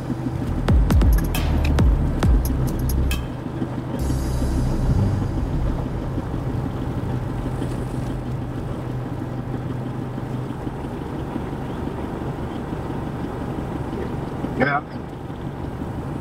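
Music with heavy beats for the first few seconds, then a vehicle engine running steadily at idle.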